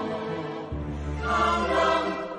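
A slow sung ballad, with sustained choir-like voices over the backing. A deep bass note comes in under a second in, and the music swells louder in the second half.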